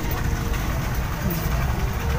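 Steady low rumble of outdoor background noise, with faint voices now and then.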